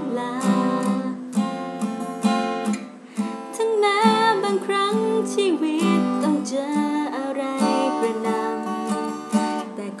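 Acoustic guitar strummed, accompanying a woman's singing voice in a slow ballad.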